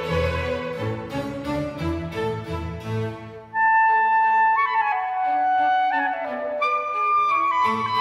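Recorded Baroque clarinet concerto: a string orchestra plays the tutti, then about three and a half seconds in the solo clarinet enters with long high held notes stepping downward over a light string accompaniment.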